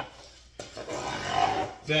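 Large chef's knife cutting down through pineapple rind onto a wooden board: a rasping, crunchy slice lasting just over a second.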